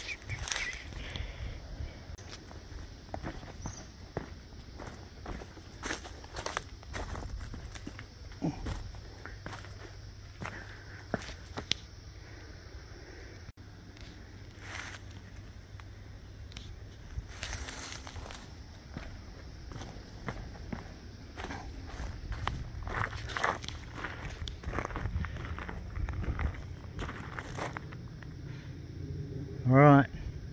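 Footsteps of a person walking over an outdoor path of dirt, stones and leaf litter and onto gravel, a series of irregular crunching steps.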